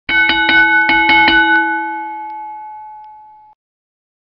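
A boxing ring bell struck in a quick run of about seven strokes, ringing on after the last one and fading until it cuts off suddenly about three and a half seconds in.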